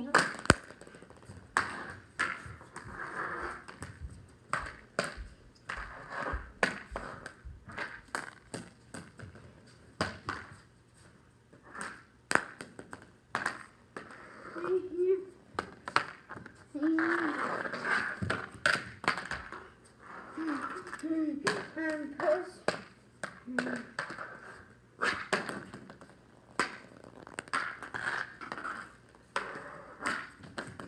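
A hockey stick clacking against a puck and a hard floor: sharp knocks at an irregular pace throughout.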